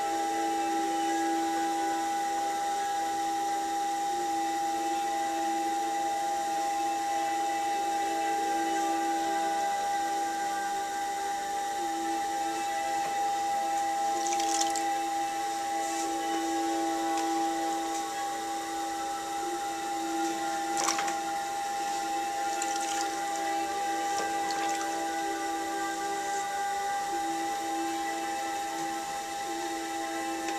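Electric pottery wheel motor running with a steady whine while wet clay is thrown. A few short wet clicks and splashes come in the middle stretch as hands and a sponge work the clay and wheel head.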